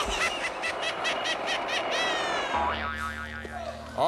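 Cartoon sound effects of a Whammy animation: a rapid rattle of about six knocks a second from the Whammy's jackhammer, then a quick rising glide about halfway, then low steady tones. It signals that the player has hit a Whammy and lost his winnings.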